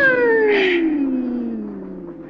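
A man's long, high-pitched martial-arts battle cry, the wailing yell of a kung fu fighter squaring off. It slides steadily down in pitch and fades away. A brief swish sounds about half a second in.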